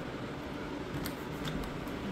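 A few faint, short clicks from a round metal door knob being handled, over a steady low room noise.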